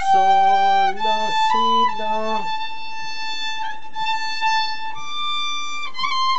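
Solo violin played slowly, bowing long held notes that step between pitches in a melody of the Persian Abu Ata mode. A man's voice sounds low along with the notes in the first two and a half seconds.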